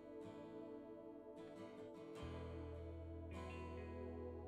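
Acoustic guitar strummed in slow chords about once a second, with keyboard accompaniment. A sustained low bass note comes in about halfway through, playing quiet instrumental worship music.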